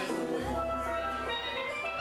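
Steel pan being played, a melody of ringing struck notes over a low bass line.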